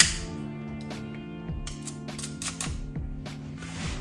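Background music with steady held tones, with a few sharp clicks of kitchen work over it, the loudest right at the start.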